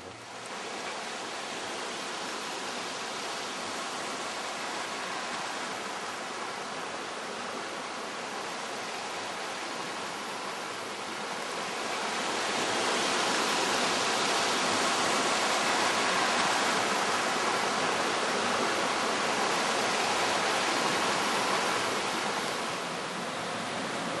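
Steady rush of a river's flowing water, growing louder about halfway through.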